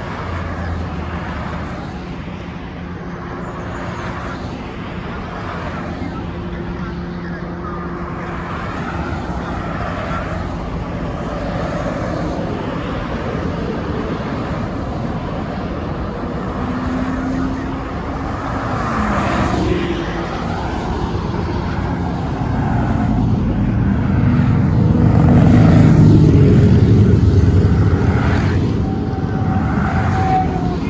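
Highway traffic passing close by, a steady stream of cars, vans and trucks with engine and tyre noise. About two-thirds of the way through, one vehicle's pitch falls as it goes past. The traffic grows loudest near the end as a heavy vehicle rumbles by.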